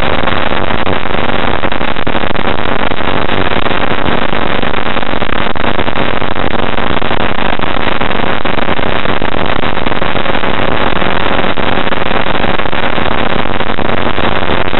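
Challenger II ultralight's engine and propeller running steadily in flight, loud and unchanging, heard from inside the cockpit with a dense rush of air noise.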